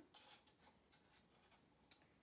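Near silence, with a faint scraping of a wooden stir stick against the inside of a plastic cup of acrylic paint and a small click near the end.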